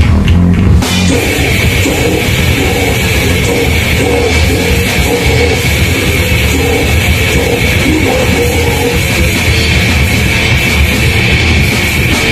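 Heavy metal band playing live and loud: amplified electric guitars over a drum kit, a dense, unbroken wall of sound.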